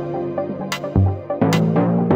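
Electronic dance track built from Native Instruments Indigo Dust samples: held synth chords, a deep bass hit about halfway through and sharp high percussion hits.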